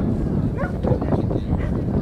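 Dog barking in quick repeated barks.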